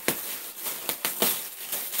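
Tissue paper rustling and crinkling as a gift package is unwrapped, with a few sharp crackles of paper.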